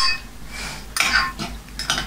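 A metal utensil scraping and clinking against a bowl while food is being mixed, with a few sharper clinks about a second in and near the end.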